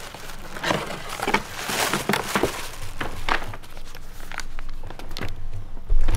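Gift-wrapping paper rustling and crinkling in irregular bursts as it is pulled away from a cardboard box, with small knocks from the box being handled; the crinkling thins out near the end.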